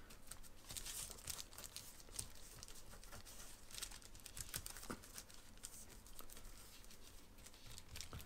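Faint crinkling and rustling of wax paper as fingers press and push in the edges of a thin raw beef patty lying on it.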